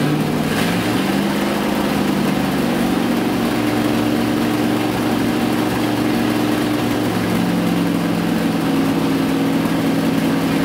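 Ford 390 big-block V8 running on an engine stand, just after its start-up. Its speed steps up about a second in and again around three and a half seconds, then drops back near seven seconds as the throttle is worked by hand.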